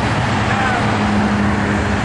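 Road traffic passing close by on a busy street, with a steady low engine hum running through most of it.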